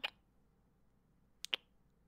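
Close-miked kiss sounds: a sharp lip smack right at the start, then a quick double smack about a second and a half in.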